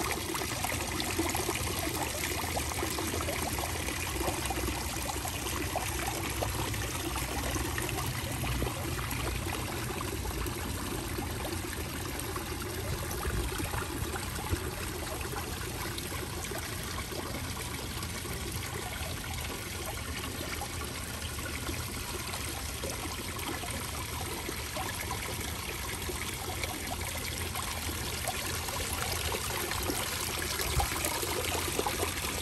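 Water from a small garden rock fountain trickling and splashing steadily over the stones.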